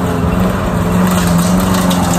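Walk-behind lawn mower engine running steadily while being pushed across grass, a steady, even hum.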